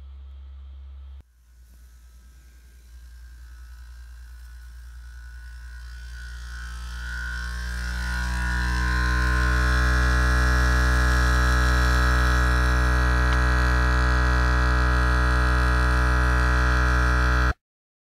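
Homemade free-piston thermoacoustic Stirling engine buzzing at about 60 Hz (around 3,600 rpm). The hum swells gradually over several seconds as the oscillation builds, holds steady, then cuts off suddenly near the end.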